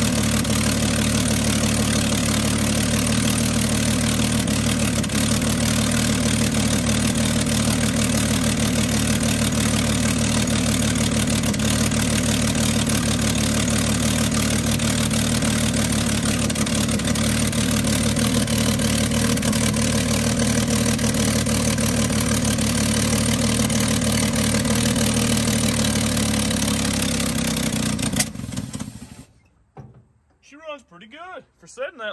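1952 Chevy dump truck's straight-six engine idling steadily on gasoline squeezed into the carburetor from a bottle. Near the end it runs out of fuel: it slows, gives one sharp pop and dies.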